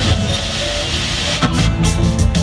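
Loud amplified rock music filling a concert hall, with a dense hissing wash of high sound over steady heavy bass for the first second and a half before pitched instrument lines come back in.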